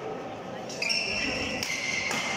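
Badminton doubles rally on an indoor court: court shoes squeak on the court mat from a little under a second in, and a racket strikes the shuttlecock with a sharp crack near the end. Both sit over the murmur of voices in the hall.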